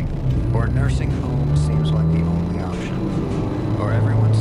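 A voice from the car radio, heard inside a moving car's cabin over the steady low hum of engine and road noise.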